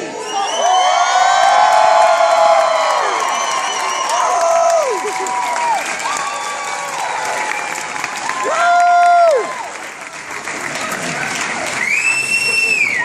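Theatre audience cheering and applauding, with long whoops from individual people rising and falling over the clapping. One louder whoop comes about nine seconds in.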